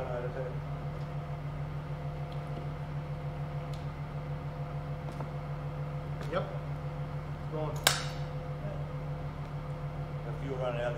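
Engine running steadily while out of the vehicle, hung from an engine crane: an even low, pulsing run at idle. A light click about six seconds in and a sharper, louder click near eight seconds.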